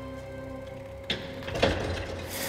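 Large steel-framed locomotive shed door being pushed open: a single knock about a second in, then a short burst of noise as the door leaf moves, over soft background music that is fading out.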